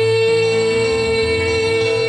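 Live dangdut band music, with a female singer holding one long note at a steady pitch over the band's bass.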